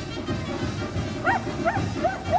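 A dog yips twice in quick succession, short up-and-down calls, over loud music.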